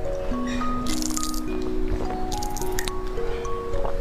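Two short wet slurps of jelly drink sucked from a small plastic syringe, about a second in and again past the middle, over background music: a slow melody of held notes.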